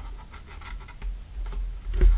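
Needle and thread drawn through pre-pierced holes in cardstock while the card is handled: a faint scratchy paper rustle with a few light ticks.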